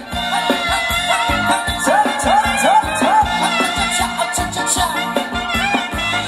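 Live Thai ramwong dance-band music with a steady, driving beat and a lead line of short upward-sliding notes.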